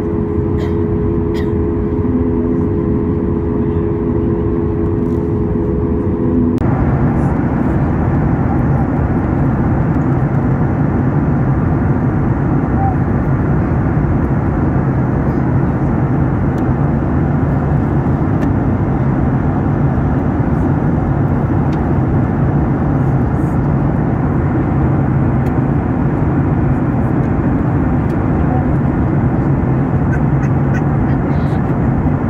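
Jet airliner cabin noise at a window seat. First the engines run on the ground with a steady whine. After a sudden change about six and a half seconds in comes the steady rush of engines and airflow in cruise.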